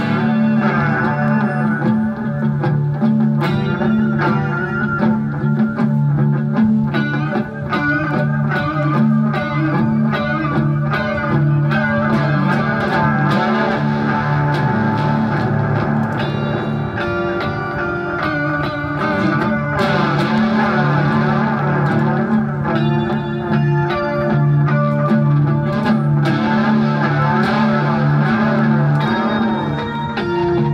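Electric guitar played through a pedalboard of effects, coming in suddenly with held low notes beneath a busy run of higher notes: the instrumental opening of a song before the vocals.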